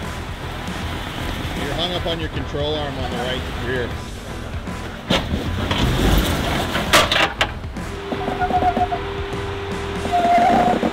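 Jeep Wrangler engine running low as it crawls over a rock ledge, under background music, with a few sharp knocks about five to seven seconds in and distant voices.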